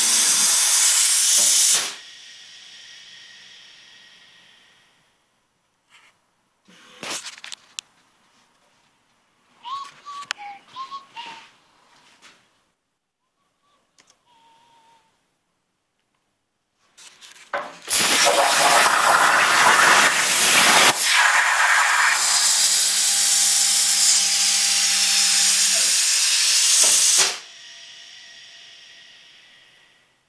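Hypertherm Powermax1250 plasma cutter on a CNC table. Its arc gives a loud, steady hiss that cuts out about two seconds in, and the air hiss fades after it. A few clicks follow. About 18 s in the arc fires again for about nine seconds and cuts out again, with the air hiss fading. The uploader puts these dropouts down to low air pressure from the compressor.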